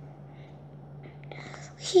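Quiet room noise with a steady low hum and a soft breath, then a child's voice starts speaking again near the end.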